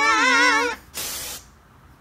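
A loud, high shrieked singing note from cartoon pop stars, wavering with heavy vibrato, cuts off just under a second in. A short burst of hiss follows.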